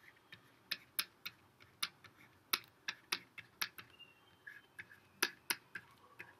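Stylus tip tapping and clicking on a tablet surface while handwriting: a faint, irregular run of sharp clicks, about three a second.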